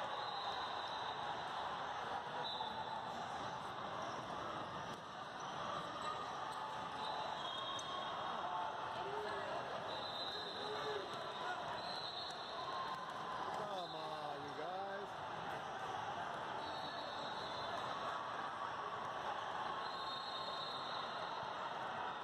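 Gym-hall din during a youth basketball game: many voices chattering and calling over basketballs bouncing, with short high squeaks now and then.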